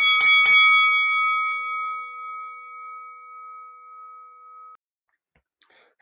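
A boxing ring bell sound effect struck three times in quick succession, then ringing out and slowly fading until it cuts off abruptly just under five seconds in.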